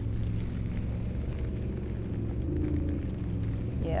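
Steady low engine drone of a motorboat out on the river, running evenly under the scene.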